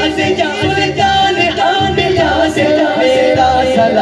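Men's voices singing an Urdu naat unaccompanied, a lead voice with a group joining in, sung into microphones.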